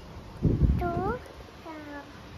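A toddler's short wordless vocal calls, a rising one about a second in and a falling one near the end, after a low thump about half a second in.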